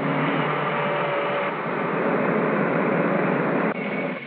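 Steady engine and road noise of a 1940s motor coach under way in city traffic, cutting off suddenly near the end.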